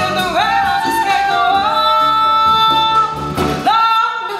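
A small live band of pedal harp, flute, upright bass and drums playing, with a high melody line that slides up into long held notes.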